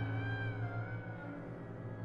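Chamber ensemble of winds and strings playing a sustained low note, with a high wavering tone sliding downward above it and fading about halfway through.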